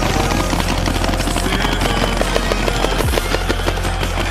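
Paintball markers firing rapid, irregular strings of shots, laid over electronic background music with a deep falling bass swoop about three seconds in.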